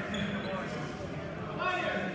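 Athletic shoes squeaking on a hardwood gym floor as the fencers move, one short squeak near the end, over the steady murmur of voices in a large hall.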